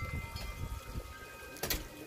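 Handling noise from a phone held against the body: irregular low rubbing and bumping on the microphone, with one sharp click near the end.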